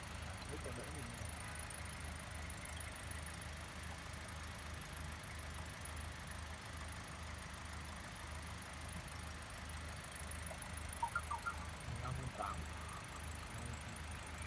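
Hyundai i10 Grand's 1.2-litre Kappa four-cylinder engine idling steadily, a low even hum, with the headlights and air conditioning switched on as load on the newly refitted alternator.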